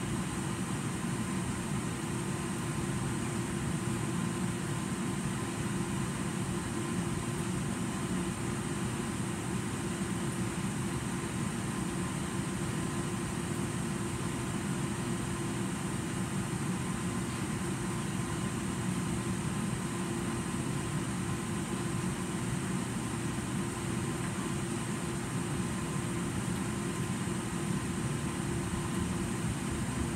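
Steady hum and rush of a central air-conditioning air handler running, heard through the ceiling return-air grille, with a few faint steady tones over it.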